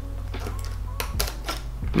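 Scissors snipping through a sheet of grip tape, several sharp cuts in the second half.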